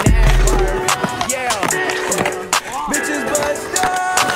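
Hip hop beat with a deep bass hit in the first second, over a skateboard rolling on concrete with several sharp clacks.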